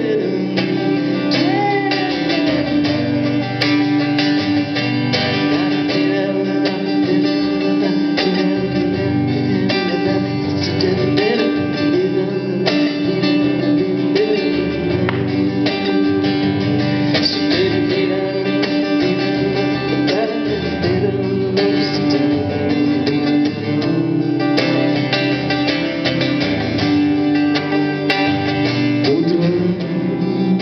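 Acoustic guitar playing an instrumental passage of a song performed live.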